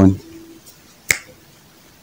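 A single sharp finger snap about a second in, crisp and short, standing alone in a pause between a man's sentences.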